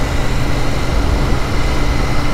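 Royal Enfield Interceptor 650's parallel-twin engine running steadily while riding, heard through loud wind and road rush.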